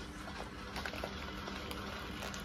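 Faint crinkling of shiny foil gift wrapping paper being handled, a few soft crackles over a steady low room hum.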